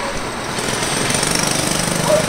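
Loud, steady mechanical rattle with a fast, even pulse, swelling up just before and holding throughout.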